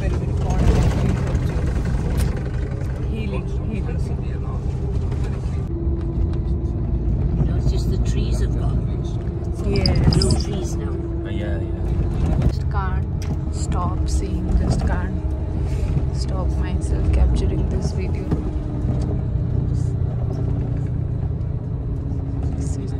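Steady low rumble and droning hum of a moving vehicle, heard from inside the passenger cabin, with the hum's pitch shifting slowly as the vehicle travels.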